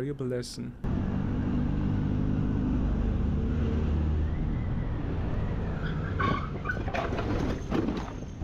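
Motorcycle engine running steadily at city speed, heard from a helmet camera with road and wind noise. Near the end come a few sharp knocks and a clatter as the motorcycle goes down in a crash.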